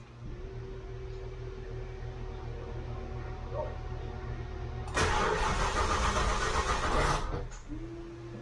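1991 Ford LTD Crown Victoria's V8 being cranked on a run-down battery: a steady hum for about five seconds, then a louder, harsher stretch of about two seconds, and the engine does not start.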